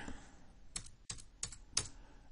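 About five quick, faint clicks of computer keyboard keys being typed, bunched in the second half.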